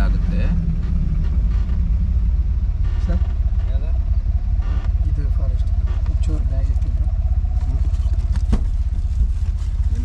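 Truck engine running, heard inside the cab: a steady low rumble with an even pulse as the lorry slows and stops at a gate, with one sharp click a little before the end.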